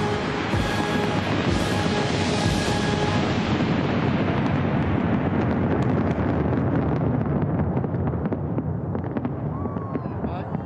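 Fireworks bursting over background music, a dense continuous wash of bangs. In the last few seconds it turns into many sharp crackles.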